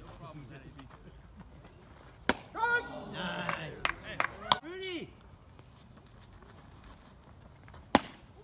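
A baseball bat hitting a pitched ball, one sharp crack about two seconds in, followed by players shouting as the ball goes up high. Another sharp knock sounds near the end.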